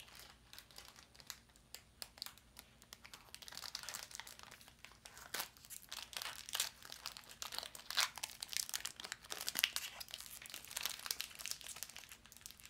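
Foil Pokémon booster pack wrapper crinkling in the hands as it is opened, a quiet scatter of crackles that thickens into a dense run from about three seconds in.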